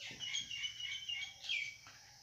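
Marker squeaking against a whiteboard while writing: a run of short, high squeaks with the pen strokes, then a small tap near the end.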